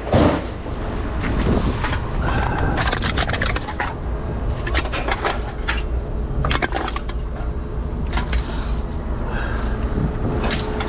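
Metal clattering and scraping: wire racks and loose scrap knocking against each other and the metal pickup bed as someone moves them and steps across it. The knocks come in irregular bunches over a steady low rumble.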